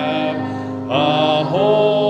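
Hymn singing led by a man's voice, with long held notes and short slides between them over a steady lower accompaniment.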